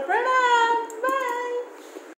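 A high-pitched voice singing two long, drawn-out notes on the words 'to... going to', the second note fading out near the end.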